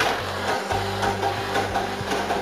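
Hydrostatic test pump starting suddenly and running with a steady low hum, pressurizing a paintball air cylinder toward its 7,500 psi test pressure.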